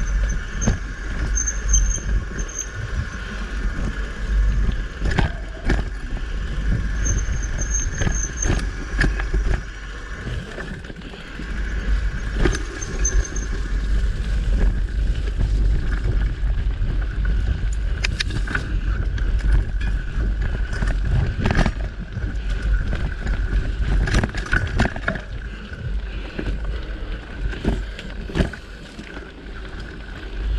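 Mountain bike riding along a rough dirt singletrack, with scattered rattles and clicks from the bike over the uneven trail. Wind rumbles on the microphone.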